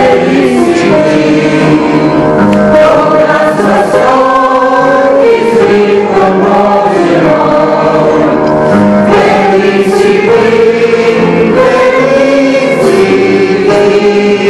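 Church congregation singing a hymn together, men's and women's voices mixed.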